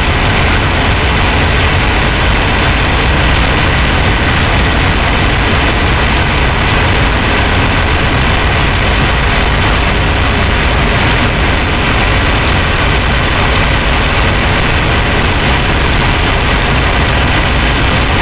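Harsh noise music: a loud, dense, unchanging wall of noise spread from deep rumble to high hiss, with no beat, melody or pauses.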